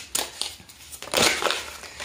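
A deck of tarot cards being shuffled and handled by hand: a few short card swishes in the first half second, then a longer sliding rustle about a second in as cards are pulled from the deck.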